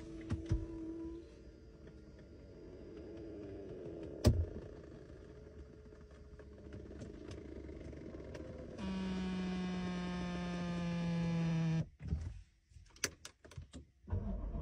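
A car's electric power seat motors whirring as the seat is adjusted. There is a short run at the start and a sharp click about four seconds in. Then a louder, steady motor whine lasts about three seconds and cuts off suddenly, followed by a few light clicks.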